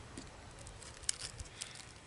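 Faint handling noise: a few light clicks and crinkles as a small plastic bag and a pair of eyeglasses are handled, in the second half.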